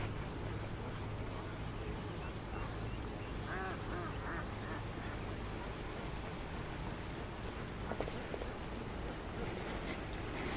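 A bird calling: a quick run of about five calls around four seconds in, then faint high chirps, over a low steady hum.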